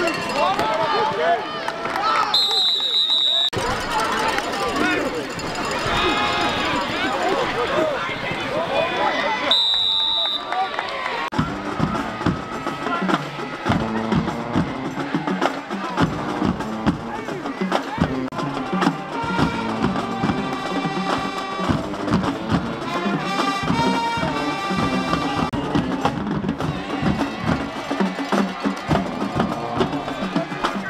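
Stadium crowd noise and voices at a football game, cut twice by a short high whistle blast. From about a third of the way in, music with a steady percussion beat of drums and wood-block-like clicks takes over.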